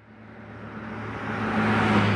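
Logo sting sound effect: a whoosh that swells steadily louder over a constant low drone.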